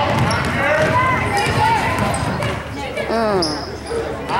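A basketball dribbling on a gym floor under several voices calling out at once, with one loud falling shout about three seconds in.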